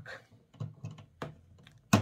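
Small plastic clicks and knocks from fitting the connector plug onto a D1S xenon bulb at the back of the plastic headlight housing, with a sharper, louder click just before the end.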